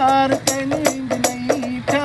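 A man chanting a wavering, drawn-out melody over a steady beat of hand strikes on a frame drum.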